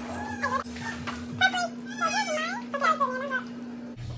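Several short, high, wavering cries in a row over a steady low hum.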